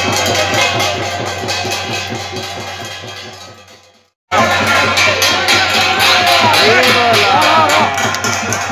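Festival drums beating a fast, steady rhythm amid crowd noise. The sound fades to silence for about half a second just after four seconds in, then the drumming resumes abruptly with people shouting.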